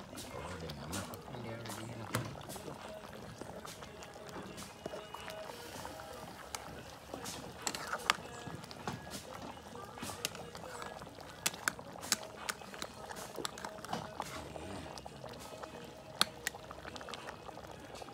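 A long metal spoon stirring and ladling soup in a steaming pot over a wood fire: scattered sharp clinks of the spoon against the pot, with liquid pouring back from the spoon.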